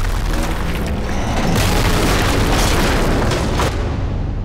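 Explosions and a stone building collapsing: deep booms and rumbling debris, with several heavy hits in the second half, layered over loud music.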